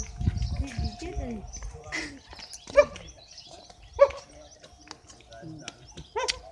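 An animal calling twice, two short loud calls a little over a second apart, over low rumble on the microphone at the start.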